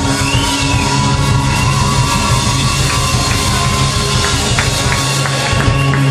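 Live rock band of Hammond organ, bass, guitar and drums playing loudly, with held low notes under a sustained higher tone and scattered drum hits.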